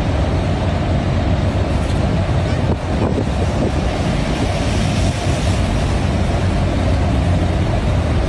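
Steady road traffic noise from cars and buses passing on a busy city street, with a heavy low rumble.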